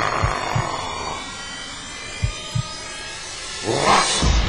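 A horror-film soundtrack in which a low heartbeat-like double thump comes twice, about two seconds apart. A hissing swell fades out early on, and a rising whoosh builds near the end.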